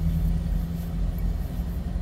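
Steady low engine rumble with a constant droning hum, heard from inside a parked car.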